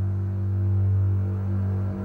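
Background film score: a low, steady drone with a few fainter sustained tones above it, swelling in just before and holding throughout.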